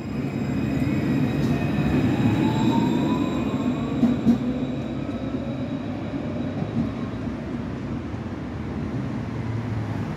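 Alstom Citadis 402 tram pulling away from a stop: its traction motors give a rising whine as it speeds up, over a rolling rumble that slowly fades as it leaves. Two sharp knocks about four seconds in.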